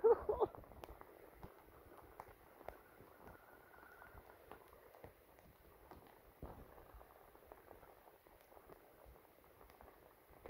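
Rain falling on a flooded street: a quiet, steady hiss of drops on the water with scattered sharper ticks. A brief voice is heard at the very start.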